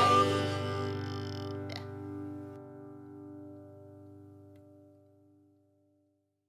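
The song's last chord on plucked string instruments, ringing out and dying away to nothing over about five seconds.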